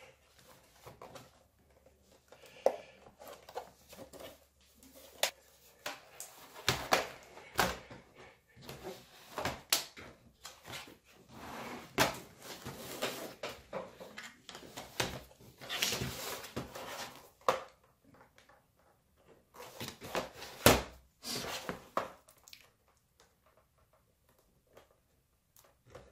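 Plastic laptop case clicking, creaking and snapping as its two halves are forced apart by hand, with stretches of scraping as a plastic card is worked along the seam. The sharp clicks come irregularly throughout, with the scraping thickest around the middle.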